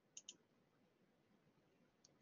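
Near silence, with two faint quick clicks a fraction of a second apart near the start.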